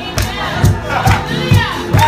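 Live worship music: drums keep a steady beat of about two strokes a second while voices cry out over it in long rising and falling calls.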